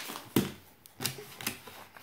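Foil blind-bag packets being handled and set down on a wooden table: a handful of short crinkles and light taps spread through the moment.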